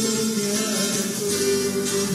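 Acoustic guitar being played, a run of plucked notes ringing on, with a single note held for about half a second near the end.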